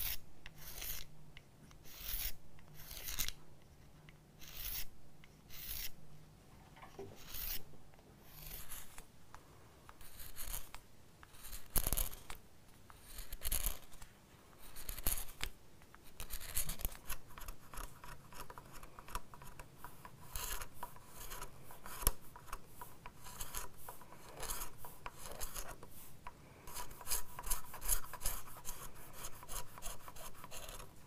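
Steel scratch-stock blade rubbed back and forth on an abrasive block to take off the burr, a dry rasping sound. The strokes come about once a second at first and turn into faster, shorter strokes about halfway through, with a single sharp knock near the middle.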